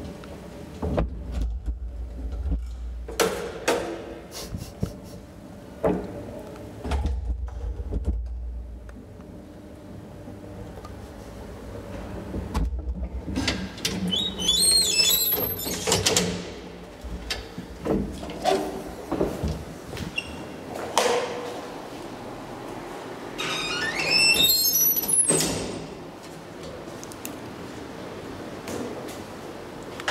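The folding metal cab gate of an old Poijes & Wettermark traction elevator being pushed open by hand, rattling with two long squealing screeches. Clunks and low thumps come before it in the first few seconds.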